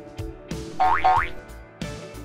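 Playful background music with a plucked, bouncy beat, and two quick rising cartoon-style tones about a second in.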